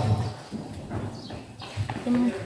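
Scattered light knocks and clatter from people handling fire hoses and their couplings on a concrete floor.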